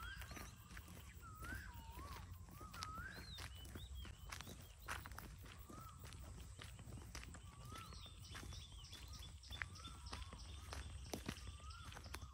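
Footsteps on a dry dirt road, with birds calling in short, curving whistled notes again and again.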